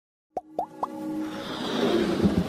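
Animated logo intro sting: three quick plopping blips, each bending up in pitch, about a quarter second apart, followed by a rising swell of synthesized music.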